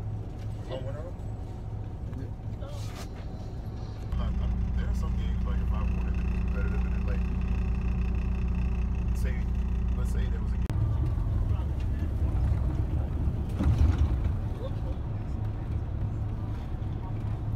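Steady low engine and road drone of a coach bus heard from inside the cabin. It steps abruptly louder about four seconds in and drops back and changes near eleven seconds. Indistinct voices are heard faintly in places.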